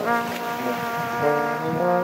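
Trumpet and French horn playing a blues duet, holding long sustained notes after a run of short detached ones; the lower part moves to a new pitch a little past the middle.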